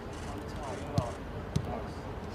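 Two sharp thuds of footballs being kicked, about half a second apart, over faint voices on the training pitch.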